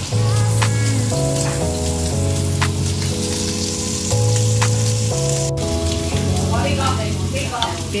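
Food frying in hot oil, a steady sizzle, under background music with held low notes.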